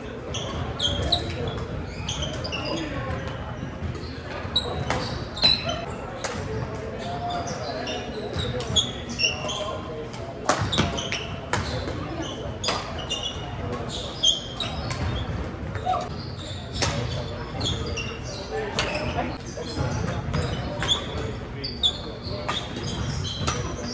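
Badminton doubles rally in a large echoing hall: sharp racket strikes on the shuttlecock every second or two, short shoe squeaks on the hardwood court, and voices in the background.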